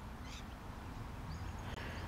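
Quiet outdoor background with a low steady rumble, and a faint high chirp in the second half.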